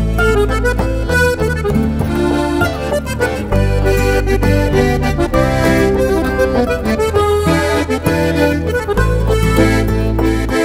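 Trikitixa, the Basque diatonic button accordion, playing a melody in a folk arrangement, over long held low bass notes.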